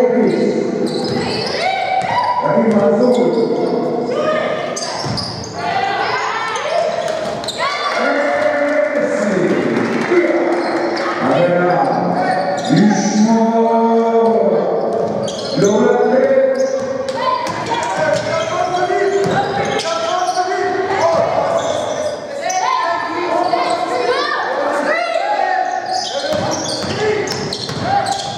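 Basketball dribbled on a hardwood court during live play, with players' and coaches' voices calling out across a large gym.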